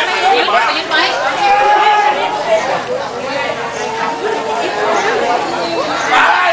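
Many people talking at once: overlapping crowd chatter with no single clear voice.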